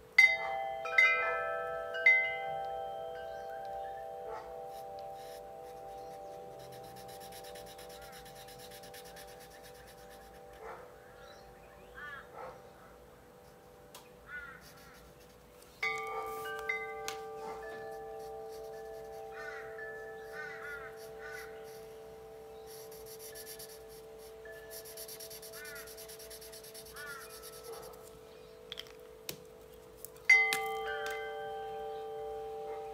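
Chimes ringing: several are struck in quick succession near the start and again about 16 seconds in, each ringing on with a long, slow fade. Short chirps sound faintly in between.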